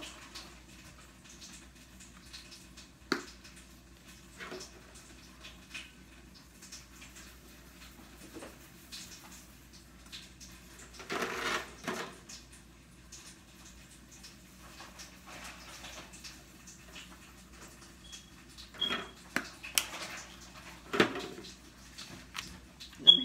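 Spice bottles being handled and shaken over disposable aluminium foil pans: scattered clicks and knocks, a longer rustling shake about eleven seconds in, and a few sharper knocks near the end.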